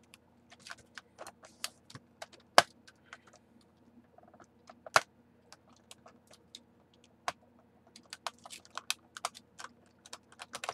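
Box cutter blade cutting through a clear plastic blister pack: irregular clicks and crackles of the plastic, with sharp snaps about two and a half and five seconds in.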